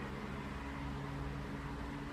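Steady low background hum with a few unchanging low tones over even noise, like a running motor or machine.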